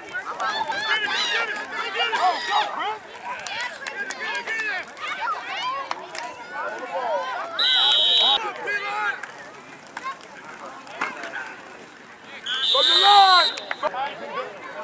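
Sideline spectators shouting and talking over one another, with two blasts of a referee's whistle, about eight seconds in as a tackle ends the play and again near the end, each lasting about a second.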